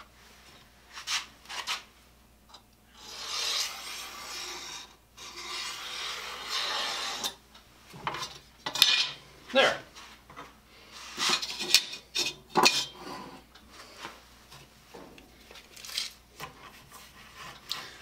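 Pencil scratching along a straightedge on a wooden board: one long stroke of about four seconds, with a brief break partway. Several sharp clicks and knocks follow as tools are handled and set down.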